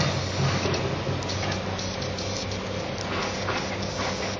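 Steady low drone of construction machinery engines running at a building site, with a few faint clicks.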